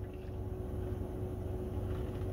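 Steady low hum inside a car's cabin, with a faint steady tone above it.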